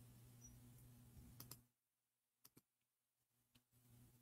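Near silence: faint room tone with a low hum that drops out under two seconds in, and a few faint clicks.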